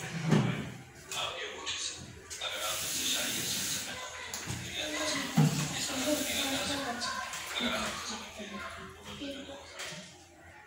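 A heavy cloth blanket rustling and swishing as it is pulled and spread over wooden chairs, with two sharp knocks, one just after the start and one about halfway.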